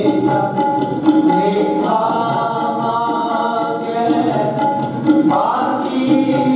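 Kirtan: voices singing a devotional hymn in long held lines, with tabla strokes keeping a steady beat underneath.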